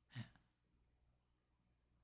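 Near silence, with one short breath from the speaker about a fifth of a second in, taken between sentences.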